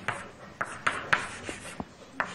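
Chalk writing on a blackboard: about six sharp taps as the chalk strikes the board, with short scratchy strokes between them.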